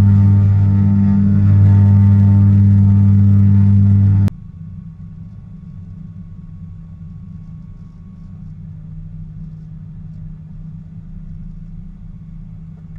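Twin piston engines of a Shrike Commander 500S heard from inside the cockpit: a loud, steady drone with a deep hum. About four seconds in it drops abruptly to a much quieter low rumble while the aircraft taxis.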